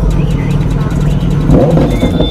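Kawasaki Z900's inline-four engine running in neutral and revved, a strong steady low engine note that swells briefly about one and a half seconds in.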